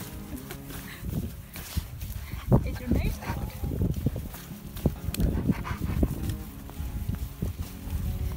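A husky-malamute dog vocalizing in short, irregular bursts, with soft music playing beneath.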